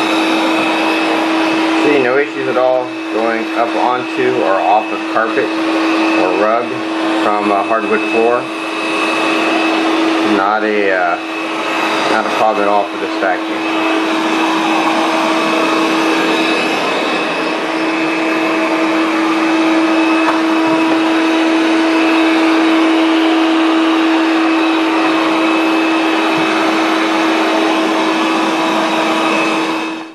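Proscenic M7 Pro laser robot vacuum running across a rug: a steady motor and suction hum held at one fixed pitch.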